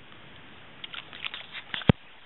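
A run of light clicks and taps, closing with one sharp, much louder knock near the end.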